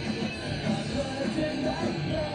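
Live punk rock band playing: electric guitar, bass and drums, with a sung vocal line coming in about a third of the way through.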